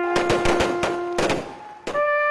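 A ceremonial rifle volley fired raggedly: a quick run of about eight sharp shots over a second or so, then one last shot near the end. A trumpet holds a low note under the first shots and stops a little after a second in.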